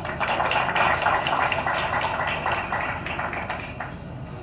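A crowd applauding, a dense patter of many hands clapping that tapers off near the end.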